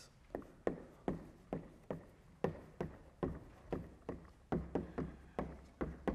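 Chalk writing on a blackboard, a sharp tap as each stroke lands, about two or three a second and fifteen or so in all.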